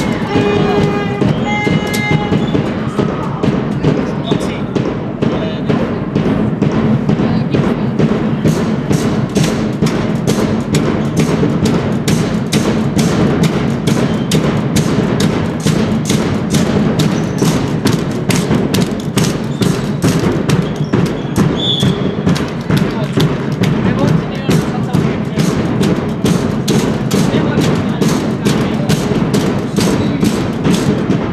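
A drum beaten in an even, fast beat of about three strokes a second, over the voices of a crowd in a sports hall.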